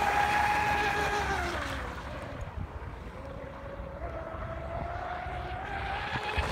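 Pro Boat Blackjack 29 RC catamaran on a 6S LiPo, its brushless motor whining at speed. About one and a half seconds in the whine drops in pitch and fades as the boat runs away, then it rises again from about four seconds in as the boat comes back.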